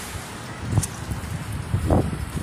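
Wind buffeting a handheld phone's microphone, in uneven low rumbling gusts that build about halfway through, with a single sharp click about a second in.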